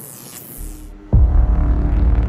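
Glitch-transition sound effect: a high, flickering static hiss for about the first second, cut off by a sudden loud, deep bass hit that starts a dark, droning music bed.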